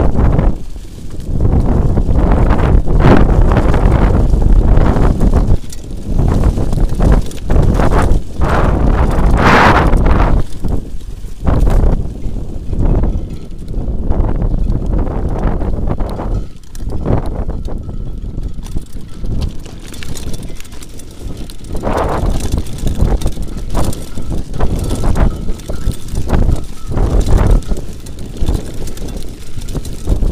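Wind buffeting an action camera's microphone on a mountain bike ride downhill, with the tyres running over a dirt trail and the bike rattling over bumps in frequent short knocks. The noise eases somewhat in the middle.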